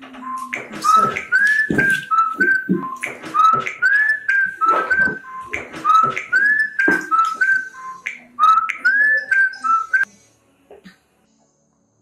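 Mobile phone ringtone: a short whistled melody over a beat, repeating four times, about every two and a half seconds, then cutting off about ten seconds in as the call is answered.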